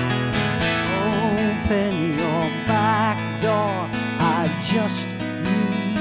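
Live solo rock performance: a twelve-string acoustic guitar strummed in steady chords, with a woman's voice singing held notes with a wide vibrato from about a second in until near the end.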